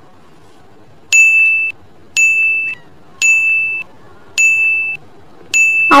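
Quiz countdown timer sound effect: five electronic beeps, about one a second, each a short steady high tone, counting down the seconds left to answer.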